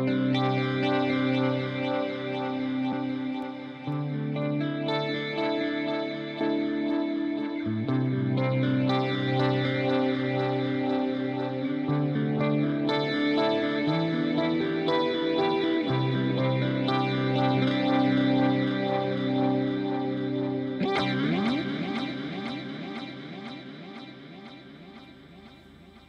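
Electric guitar played through a Valeton GP-200LT multi-effects processor on its 'Endless Dream' preset: slow, sustained chords changing every few seconds, washed in modulation and echo. Near the end the pitch swoops and the sound dies away.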